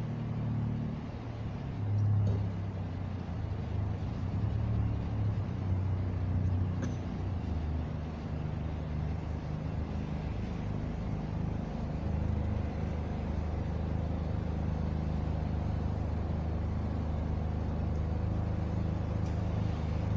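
Car engines running at low speed: a steady low hum whose pitch shifts a little as the vehicles move slowly.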